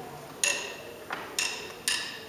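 Drumsticks clicked together in a steady count-in, sharp wooden clicks about twice a second.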